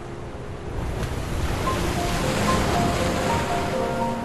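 A sea wave washing in, swelling to a peak about halfway through and then easing off, under soft, slow instrumental music with long held notes.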